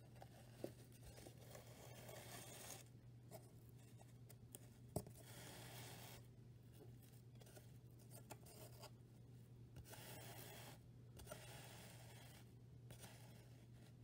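Faint rustling and scraping of yarn being drawn through the warp strings of a cardboard loom, in several short stretches, with a couple of light ticks. A low steady hum sits underneath.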